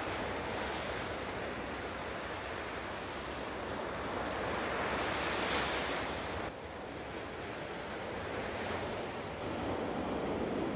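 Ocean surf washing onto a beach, a steady rush that swells near the middle and drops off abruptly about six and a half seconds in.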